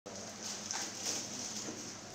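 Faint rustling and a few light knocks as packets of medical supplies are handled and packed into bags, over a steady hiss.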